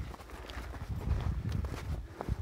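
Footsteps crunching and clinking on loose, rough lava rock, several steps over a low, uneven rumble.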